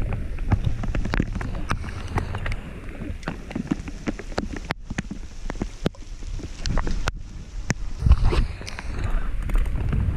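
Wind buffeting the camera microphone in steady rain, an uneven low rumble with a stronger gust about eight seconds in, over a hiss of rain. Scattered sharp taps and clicks run through it.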